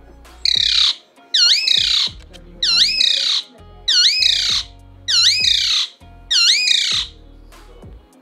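Alexandrine parakeet giving six loud, harsh squawks in a row, one about every second and a quarter, each a short screech that dips and rises in pitch.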